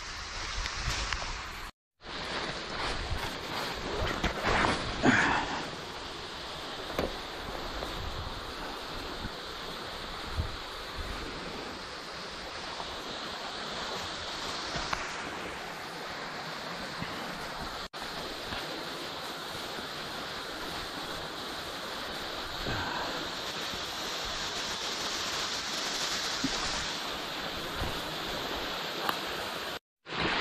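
Steady rush of creek water running over a waterfall, growing louder toward the end, with a few crunches of footsteps in dry leaves.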